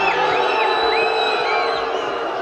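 Football stadium crowd reacting to a chance in front of goal: cheering and shouting, with several high whistles that rise and fall over it.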